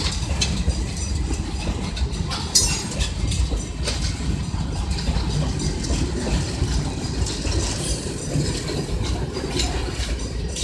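Loaded freight train of oil tank cars rolling past at close range: a steady heavy rumble of wheels on rail with irregular sharp clacks as the wheels cross rail joints. A brief high metallic screech sounds about two and a half seconds in.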